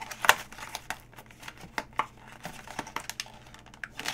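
Paperboard packaging box being opened by hand: a string of small clicks and rustles of the card flap, the sharpest about a third of a second in.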